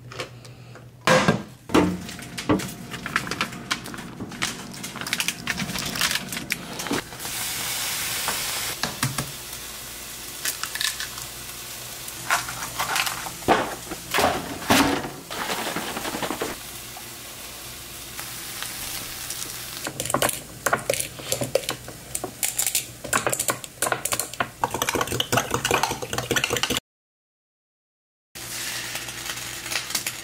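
Breakfast being cooked on an electric stove: repeated knocks and clatter of dishes, a pan and utensils, stirring, and the hiss of a frying pan. The sound cuts out completely for about a second and a half near the end.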